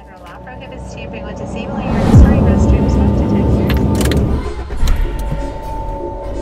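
A vehicle passing close by. It grows louder up to a peak about two seconds in, where its pitch drops sharply, then runs on for a couple of seconds before easing off.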